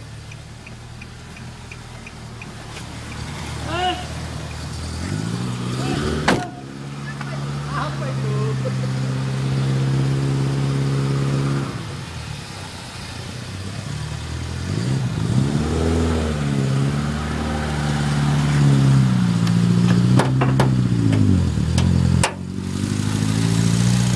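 Nissan Grand Livina's 1.5-litre four-cylinder engine running, its speed rising and falling several times as it is revved. There is a sharp knock about six seconds in and two more near the end.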